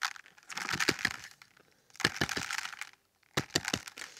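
Loose granular bonsai substrate tipped out of a tilted ceramic bonsai pot, clattering onto a tub as many small hard clicks in three spells with short pauses between.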